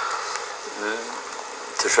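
A pause in a man's speech over a steady hiss, with a short hesitant vocal sound about a second in and speech starting again near the end.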